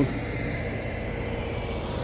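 Steady low rumble of vehicle engines from stopped cars and trucks idling in a traffic jam below, with a faint steady hum.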